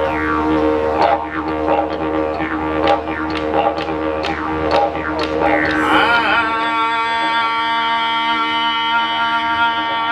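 Didgeridoo droning with a rhythmic pulse a little under twice a second. About six seconds in, the low end drops away and the sound settles into a steadier, brighter held tone.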